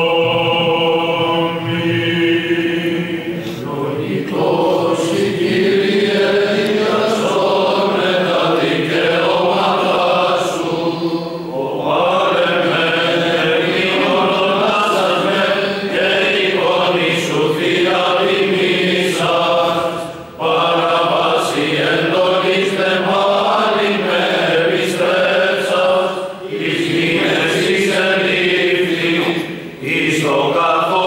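Greek Orthodox Byzantine chant sung by a group of men's voices, the melody moving over a steady held low note. It runs in long phrases with brief pauses between them.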